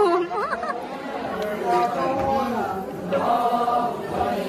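Chatter and a woman's voice, then about a second and a half in a group of voices takes up a chanted Ponung song in long held notes.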